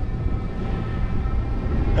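Low rumble of wind and tyres while riding a bicycle along a paved path, with a faint steady whine over it.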